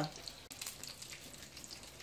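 Meatballs frying in a pan, a faint steady sizzle with light crackle.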